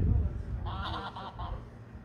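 Geese honking: a quick run of about four honks in the middle, after a low rumble at the start.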